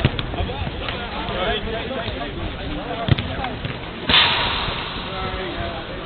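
A football being kicked on an artificial pitch, with sharp thuds at the start and about three seconds in, under distant shouting from players. About four seconds in, a sudden rush of noise, the loudest sound here, starts and fades over about a second.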